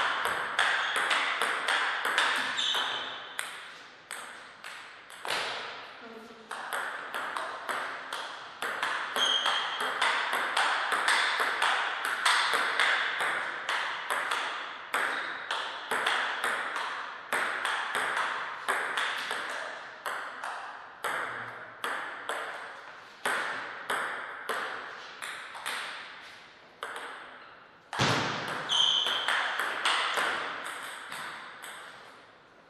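Celluloid-type table tennis ball struck back and forth by rubber-faced paddles and bouncing on the table: a quick, uneven run of sharp clicks, several a second, each with a short echo in the hall.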